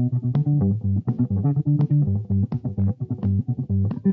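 Electric bass guitar played with the fingers: a fast, rhythmic Senegalese-style line of short low notes, mixed with muted, clicky notes that stand in for a hi-hat.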